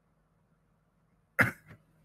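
A single short cough from a person at the microphone, about one and a half seconds in.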